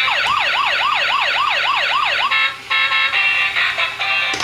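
A toy police car's electronic siren effect from its small built-in speaker: a fast yelp sweeping up and down about four times a second for about two seconds. A beeping electronic tune then takes over.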